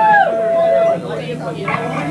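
Live band between lines of a song: a steady held note stops about a second in, while a man's voice slides up and then falls away over it in a drawn-out wail at the microphone.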